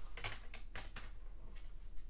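Hard plastic graded-card slabs clicking lightly against each other as they are handled and set on a stack, a handful of small separate clicks.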